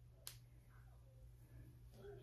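Near silence: room tone with a faint low hum, broken by one short, sharp click about a quarter of a second in.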